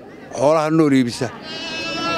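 A bleat from market livestock: one long, high, wavering call in the second half, after a man's voice.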